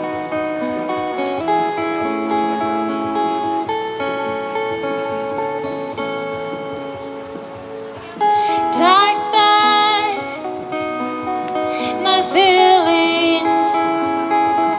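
Live solo acoustic guitar playing a run of sustained notes, joined about eight seconds in by a woman singing over it, her voice louder than the guitar.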